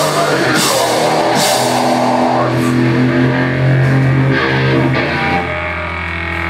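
Live heavy hardcore band playing: distorted electric guitars and bass with a drum kit, cymbals crashing in the first two seconds. The band then holds one sustained chord that rings out as the song ends.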